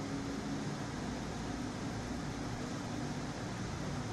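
Steady background hum and hiss of room noise, picked up by the podium microphone during a pause in speech.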